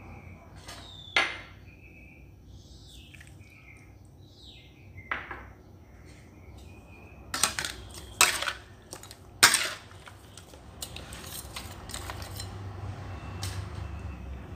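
A metal spoon and spatula clinking against a steel wok as seasonings are added to seared duck pieces and tossed. There are several separate sharp clinks, the loudest about nine and a half seconds in, with softer scrapes and taps in between.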